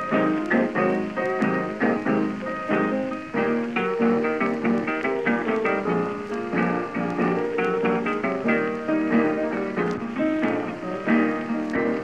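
Instrumental break in a late-1920s blues recording: piano and plucked acoustic guitar playing a steady run of notes between sung verses. It has the muffled, narrow sound of an old 78 rpm record, with light surface crackle.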